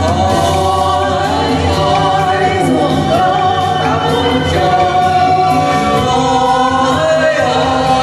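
Karaoke singing: amplified voices sing into microphones over a loud recorded backing track, without a break.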